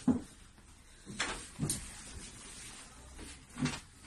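Plastic children's slide-and-swing set being handled during assembly: a few light knocks and clicks from its parts, with a sharp knock at the start, a scrape and click about a second and a half in, and another knock near the end.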